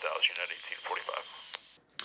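Air-band voice radio traffic heard through the small speaker of a Quansheng UV-K5 handheld radio, a thin, tinny voice with the low and high ends cut off. It trails off near the end.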